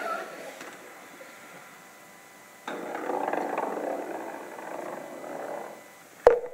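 Theatre audience suddenly breaking into a burst of laughter and exclamations about two and a half seconds in, reacting to a putt on stage.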